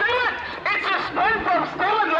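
Speech only: people talking close by, the words unclear.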